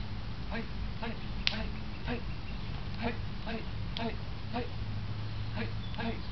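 Arms and hands slapping against each other as two people trade strikes and blocks, with one sharp slap about a second and a half in and fainter ones near three and four seconds in.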